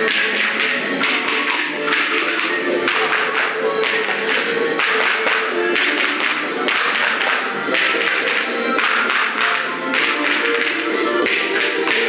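Small handheld percussion instruments played by a group of children in rhythmic passages, over recorded backing music.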